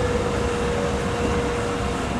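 Steady street noise from passing traffic, with a constant hum running through it.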